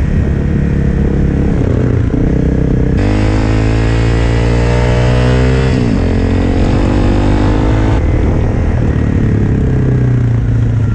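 Honda CRF250L's single-cylinder engine running under way, heard close from the rider's helmet. The engine note steps up and down with throttle and gear changes, climbing for a few seconds from about three seconds in before dropping back.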